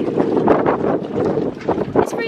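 Strong gusty wind buffeting a phone's microphone, a loud rumbling rush that swells and dips.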